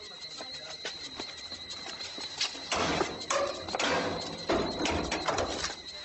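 Clattering and scraping on a metal dustbin as a person climbs into it and handles the lid, starting about three seconds in and going on for about three seconds.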